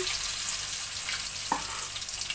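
Egg-battered bread slice frying in hot oil in a wok, a steady sizzle with fine crackling. A single sharp click comes about one and a half seconds in.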